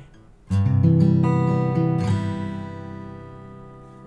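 Olson SJ acoustic guitar, cedar top with Indian rosewood back and sides: a chord struck about half a second in, with more notes picked over it during the next second and a half, then left ringing and slowly dying away.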